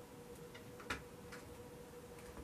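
Faint room tone with a steady hum and a few scattered light clicks, the loudest about a second in.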